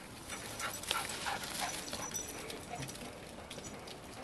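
Small dogs at play giving a run of short, high yips and whines, most of them in the first two seconds.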